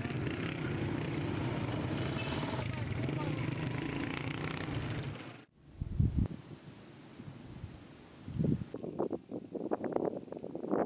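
Street traffic with motorcycle engines running steadily, which stops abruptly about five seconds in. After that there is quieter outdoor sound with a couple of low thumps and faint voices near the end.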